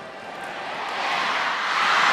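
Crowd noise in a badminton arena, a steady din that swells into a loud roar over the second half as a rally begins.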